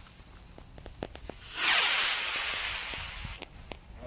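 Bottle rocket fuse burning with faint crackles, then about a second and a half in the rocket launches with a loud hissing whoosh that fades as it climbs away.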